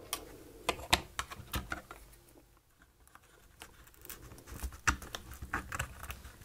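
A small hand tool prying and scraping at the glued circuit board and flex cable inside an opened Kindle Oasis 2: scattered small clicks and scratches. They cluster about a second in and again near the end, with a quieter stretch in between.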